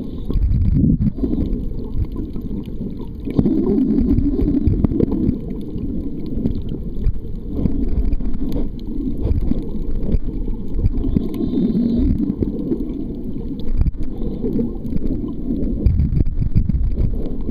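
Muffled underwater noise picked up by a submerged camera: a low, uneven rumble of water moving around the housing, with scattered faint clicks.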